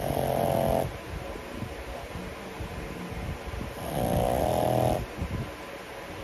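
A young pug snoring in its sleep: two loud snores, the first right at the start and the second about four seconds later, each about a second long, with quieter breathing between.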